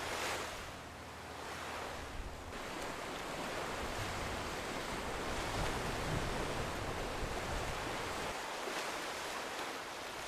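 Ocean surf washing on a rocky shore, a steady rush that swells and eases, with some wind on the microphone.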